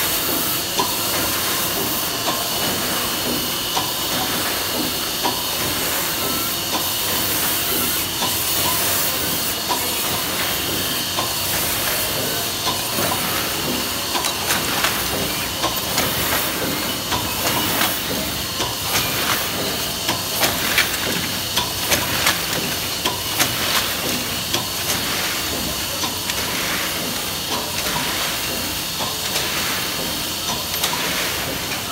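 Bobst SP 1260 E platen die-cutting press running in production: a steady hiss with a regular mechanical clatter as the machine cycles sheets through.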